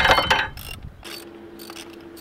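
Ratchet wrench clicking as a bolt is turned loose: a quick, loud run of clicks in the first half second, then slower, fainter clicks over a faint steady hum.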